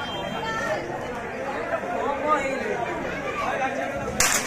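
Several people chattering at once, overlapping voices with no clear words.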